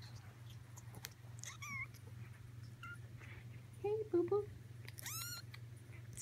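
Persian kittens about four weeks old mewing: a few thin, high mews, the loudest and longest near the end, rising and then falling in pitch.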